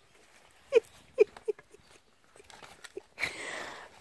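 Billy goat giving a few short, low grunts, then a breathy rush near the end.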